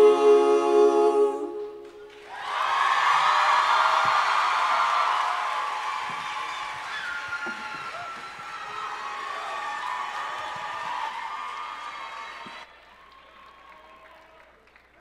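A vocal group's final held chord, released about a second and a half in; after a brief gap the audience breaks into applause and cheering with whoops for about ten seconds, which cuts off suddenly near the end.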